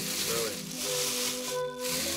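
Plastic carrier bag rustling and crinkling as hands pull it open, over background music with long held notes.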